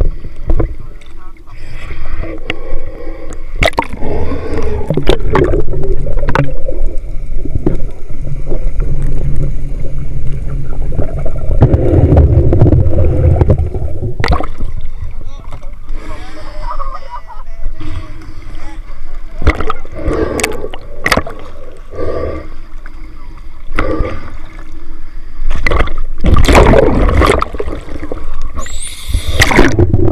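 Sea water sloshing and splashing around a camera at the surface, then muffled underwater gurgling and bubbling with scattered clicks once it is under; a loud rush of bubbles near the end.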